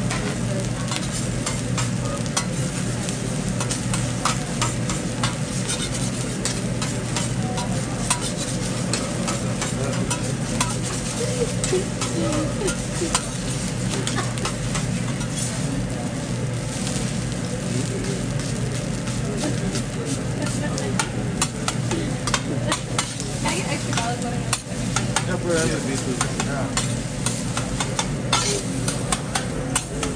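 Food sizzling on a steel teppanyaki griddle while a metal spatula scrapes and taps the flat-top, chopping and turning rice, egg and cabbage. The spatula clicks come thicker and sharper in the last third.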